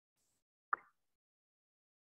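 A single short pop about three-quarters of a second in, otherwise near silence.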